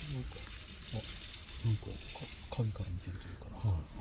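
Short, low murmurs and grunts of a man's voice, about five in four seconds, over a faint steady hiss.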